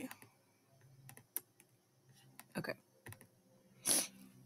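Scattered clicks of a computer mouse and keyboard, a handful of short sharp taps spread through, with a quiet spoken "okay" about two and a half seconds in.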